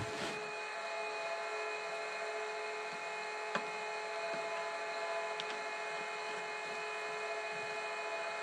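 Steady machine hum, several constant tones over an even hiss, with a few faint clicks as the LED light is handled in its cardboard box.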